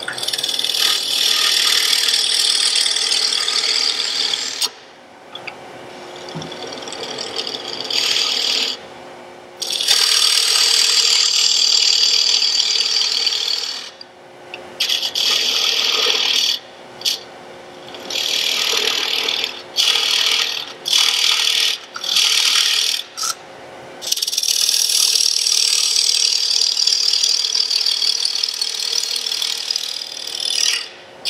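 A hand-held turning tool cutting into a spinning wooden lid blank on a small wood lathe. Shavings come off with a hissing scrape in stretches of one to several seconds, broken by short gaps where the tool comes off the wood, over the lathe's steady hum.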